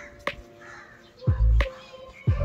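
A crow cawing a few times over background music, with one loud, deep bass hit about a second and a half in.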